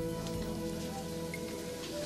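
Soft background music holding sustained chords, with a steady hiss beneath it.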